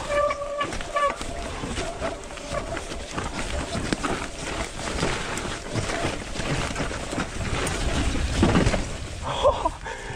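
A mountain bike ridden fast down a rough dirt trail: tyre noise on the dirt with frequent knocks and rattles from the bike as it goes over roots and rocks.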